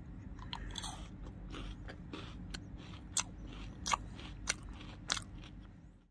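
Biting and chewing a KitKat chocolate-coated wafer finger: about six sharp crunches of the crisp wafer with softer chewing between them, fading out at the end.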